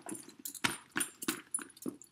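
Gold-tone metal clasps and rings of a Louis Vuitton Speedy Bandoulière 25's shoulder strap clinking, with rustling of the canvas bag as it is handled, in a run of irregular clicks.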